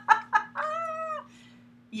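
A woman's laughter: a few quick chuckles, then one drawn-out high-pitched vocal note.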